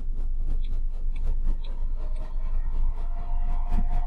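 Two 40 mm cooling fans in a FormBot T-Rex 2+ 3D printer's control box running, a very noisy steady hum with a faint higher tone joining about halfway through.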